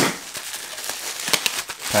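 Plastic bubble wrap crinkling and crackling as a wrapped package is handled, with a sharp rustle at the start followed by a run of small crackles.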